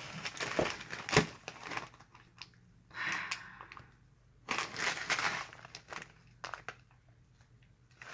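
Plastic instant-noodle packets crinkling and rustling as they are handled, in irregular bursts with a sharp click about a second in, then quieter near the end.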